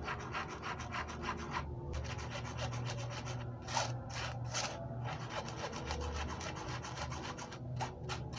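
A spoon scraping flour through a mesh sieve, a quick rasping rub of many short strokes, with a brief pause about two seconds in and a louder patch near the middle.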